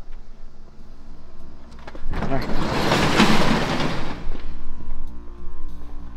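Sectional garage door being opened, a loud rattling rumble lasting about two seconds, starting about two seconds in, over quiet background music.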